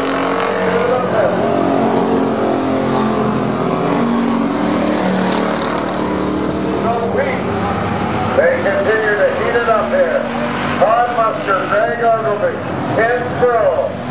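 Several thunder-class stock car engines running hard around a paved oval, a dense drone of overlapping engine notes. After about seven seconds the sound turns into repeated rises and falls in pitch as the cars accelerate and lift through the turns.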